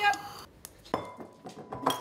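Light clinks of kitchenware, three short sharp knocks in all, the middle one ringing on briefly.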